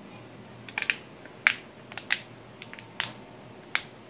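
Plastic back cover of an O+ 360 HD smartphone being pressed back onto the phone, its edge clips snapping into place in a string of about eight sharp, irregular clicks.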